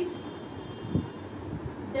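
Marker writing on a whiteboard: dull knocks and strokes of the pen against the board, the loudest about a second in, over a low steady background rumble.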